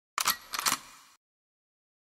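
A few sharp clicks in two quick clusters within the first second.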